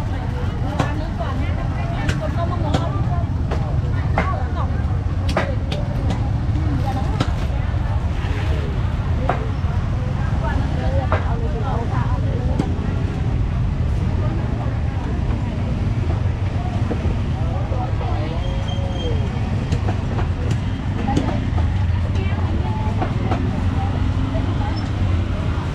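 Busy open-air market ambience: voices of people talking in the background over a steady low rumble, with scattered small clicks and knocks.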